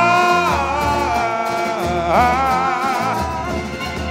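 Boi-bumbá toada music: a voice holding long, bending sung notes over a steady drum beat.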